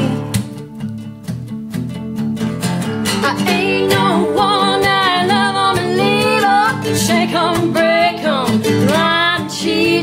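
Acoustic guitar strummed in a fast country song. Singing comes in about three and a half seconds in and carries on with held, wavering notes until just before the end.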